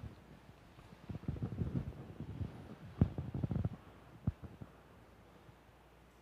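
Low, muffled thumps and rumbling in two spells, about a second in and about three seconds in, with a single sharp knock a little after four seconds: handling or movement noise picked up by the microphone.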